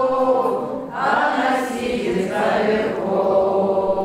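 Several voices chanting the refrain of a Russian folk nursery rhyme together in long, drawn-out sung phrases.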